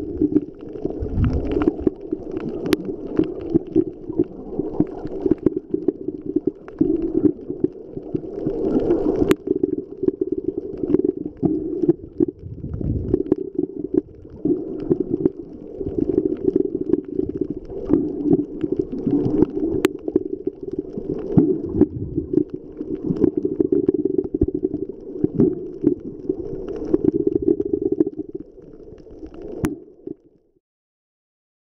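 Muffled underwater water noise picked up by the microphone of a Nikon Coolpix AW130 waterproof camera held underwater. It is an uneven, low rumbling wash with occasional low thumps and a few sharp clicks, about nine and twenty seconds in.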